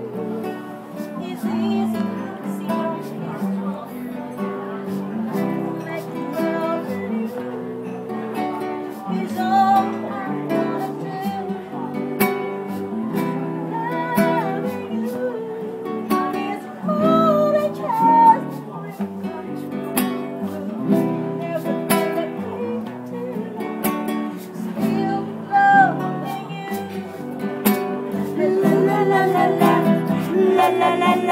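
Acoustic guitar strummed as live accompaniment while a woman sings the melody over it.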